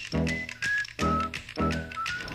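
Background music with a steady beat of about two hits a second and a high, stepping lead melody over it.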